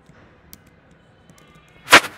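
A few faint clicks, then one short, very loud, sharp noise burst just before the end, close to the microphone.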